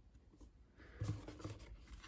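Cardboard trading cards being handled and laid onto a stack on a tabletop. Faint, irregular rustling and scraping starts about a second in.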